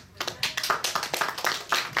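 Audience applause: many people clapping together, starting about a quarter second in.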